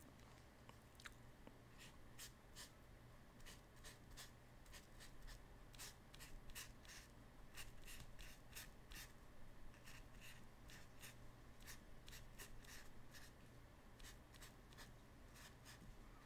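Faint, irregular scratchy strokes of a thin paintbrush dragged over the painting surface while lettering, over a low steady hum.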